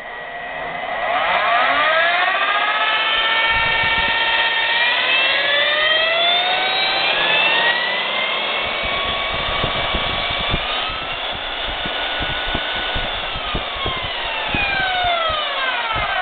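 Milwaukee magnetic base drill's electric motor spinning up with a whine that rises in pitch over several seconds, running steadily at speed with no cutter and no load, with scattered light clicks. Near the end it is shut off by the emergency stop and winds down in a falling whine.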